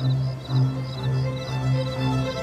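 Dramatic background score of sustained low notes with a pulsing rhythm, swelling in loudness right at the start.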